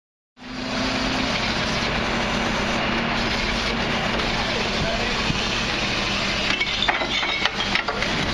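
Refuse truck running steadily while its Terberg hydraulic bin lift raises a four-wheeled commercial bin and tips it into the rear hopper. The sound cuts in just under half a second in, and clattering knocks come near the end as the bin tips over.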